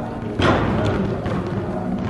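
A basketball being dribbled on a gym floor: one loud thud about half a second in, then fainter bounces, over background music.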